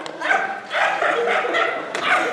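A man's voice barking and yipping like a dog in a run of short calls.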